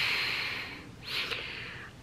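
A woman's long nervous breath out through the hand over her mouth, fading away, with a second, shorter breath about a second in.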